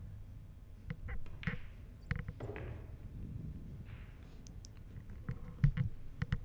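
A pool shot: sharp clicks of a cue tip striking the cue ball and balls clacking together about a second in, with more clicks around two seconds. A cluster of knocks near the end is the loudest sound.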